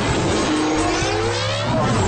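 Radio-promo sound effect: a whoosh whose pitch rises for about a second and a half, over a music bed with a steady low bass.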